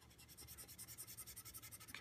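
Faint stylus scratching back and forth on a drawing tablet, about ten quick hatching strokes a second as a bar is shaded in.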